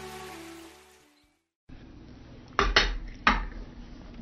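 Intro music fading out in the first second, then a moment of silence, then three sharp knocks over quiet room tone in the second half.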